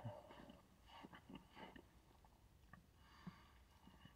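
Near silence, with a few faint, short mouth sounds from a man sipping soda from a can: small gulps and sniffs, mostly in the first two seconds.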